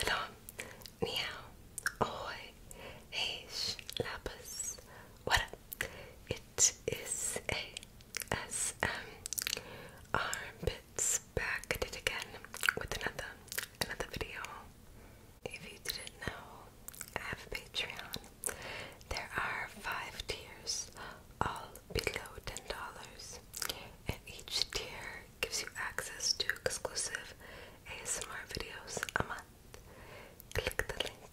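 A person whispering close to the microphone in short phrases, with small clicks between them.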